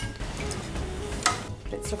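Roasted vegetables being served onto a ceramic platter, with a few light clinks of the serving utensil against the plate over soft background music.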